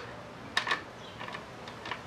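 A few faint, light metallic clicks and ticks from a pit bike's exposed transmission gear being turned by hand in neutral; the clearest click comes about half a second in.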